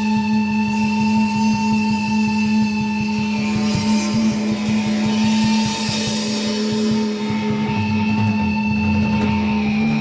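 Rock band of electric guitar, bass and drum kit playing live, built on a long held droning note. A cymbal wash swells in the middle.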